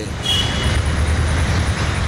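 Steady rumble of city road traffic, with a short faint high tone about half a second in.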